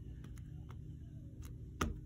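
Ink pad dabbed onto a stamp, giving a few faint taps and one sharper tap near the end, over a low steady room hum.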